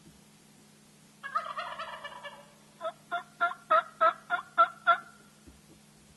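Wild turkey gobbler gobbling, a rattling call lasting about a second, followed by a run of eight short, evenly spaced yelps that are louder than the gobble.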